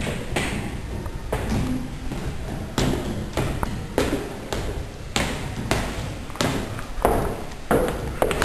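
A series of about a dozen sharp knocks and taps at uneven intervals, roughly half a second to a second apart, some ringing briefly.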